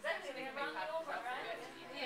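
Indistinct chatter: people talking in the room with no words clear, a woman's voice among them.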